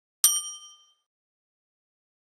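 Bell-like ding sound effect of a subscribe-button notification-bell animation, struck once about a quarter second in and ringing out in under a second.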